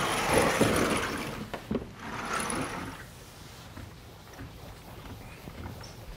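Vertically sliding lecture-hall chalkboard panels being moved along their tracks: a loud rushing rumble with clicks that lasts about three seconds, then only faint rubbing and small ticks.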